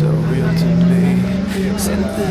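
A car engine held at high revs during a burnout, its pitch climbing slowly and then dropping slightly near the end.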